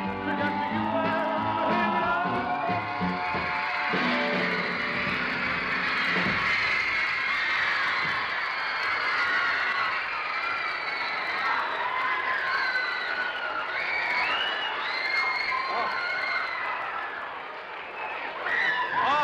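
A band playing through the first few seconds, then a studio audience screaming and cheering, with many shrill wavering screams that carry on to the end.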